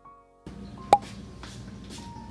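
Soft background music of held tones fades out, drops to near silence for a moment, then comes back about half a second in. A single sharp click sounds just before the one-second mark.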